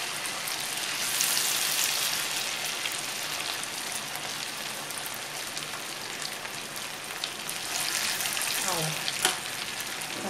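Chicken 65 pieces deep-frying in hot oil in a kadai: a dense, steady crackling sizzle of bubbling oil. A short pitched sound and a sharp click come near the end.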